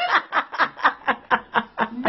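A person laughing: a rhythmic run of short 'ha' pulses, about four a second.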